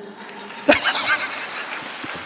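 Audience laughing and clapping, starting suddenly less than a second in and carrying on steadily, with a few high laughs standing out over the clapping.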